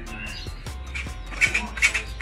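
Hand hedge shears snipping, the metal blades clicking shut several times in quick succession, over background music.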